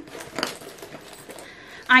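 A handbag and a purse being handled as the purse is pushed into the bag's zip pocket: quiet rustling with a light clink of metal hardware about half a second in.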